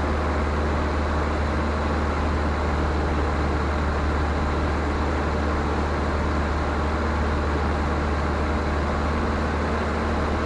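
Luscombe 8A light aircraft in steady cruise, heard from inside the cabin. The engine and propeller make a constant low hum with even airflow noise over it, with no change in power.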